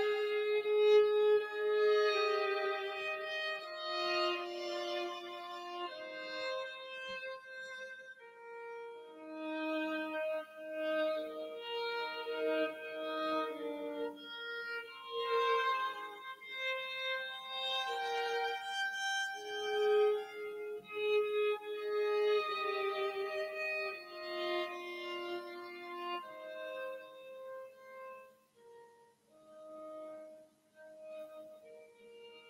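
Two violins playing a duet: sustained bowed notes in two interweaving lines that change pitch every second or so, growing quieter near the end.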